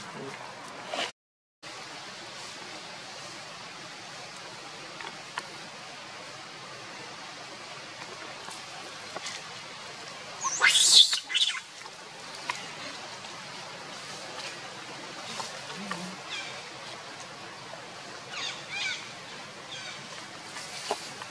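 Long-tailed macaques calling: one short, loud, shrill monkey scream about halfway through, and a few brief, fainter high calls near the end, over a steady outdoor hiss.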